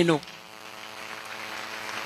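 Steady electrical buzz and hum from the church's microphone and sound system, heard in a short pause between spoken sentences.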